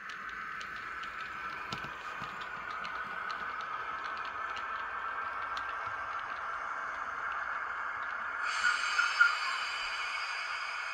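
Model train running along the track with a steady whirring hum and light, irregular clicks as its wheels cross the rail joins. About eight and a half seconds in, a higher, multi-tone whine joins in and is loudest near the end.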